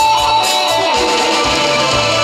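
Live band music, an instrumental passage led by guitar over a steady drum beat of about two strokes a second.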